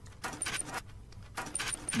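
Keys jangling: a quick, irregular run of small metallic clicks and rattles.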